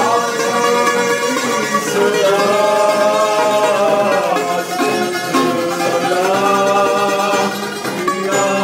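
A man singing at full voice, holding long notes whose pitch wavers and slides, with brief breaks for breath partway through and near the end.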